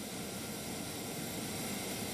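Steady rushing roar of the natural gas burners firing a primary steam reformer.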